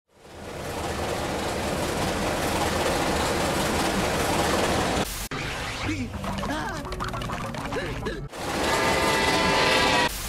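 A loud rushing noise fades in and runs for about five seconds. After a sudden cut come cartoon voices and sound effects. For the last two seconds a steam locomotive whistle, GTW No. 6325's, blows a steady chime chord over hissing steam.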